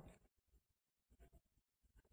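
Near silence: a pause in a sermon, with only faint room tone.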